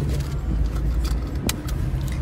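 Car running, heard from inside the cabin as a steady low rumble, with a few light clicks and one sharper click about one and a half seconds in.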